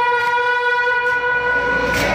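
A loud, long held musical note, steady in pitch and horn-like with many overtones, dying away right at the end.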